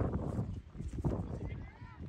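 Soccer match on a grass field: players' voices calling and shouting over knocks and thuds of running feet and the ball, with a low rumble underneath.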